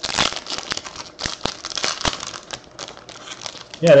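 Foil wrapper of a baseball card pack being torn open and crinkled by hand: a run of uneven crackling rustles.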